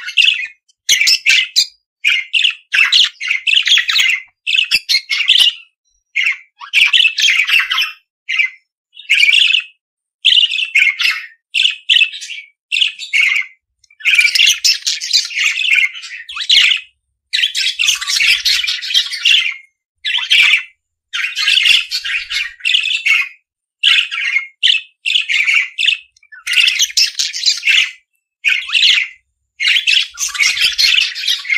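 Budgerigars chattering and warbling with scratchy chirps and squawks, in bouts of one to three seconds broken by short silences.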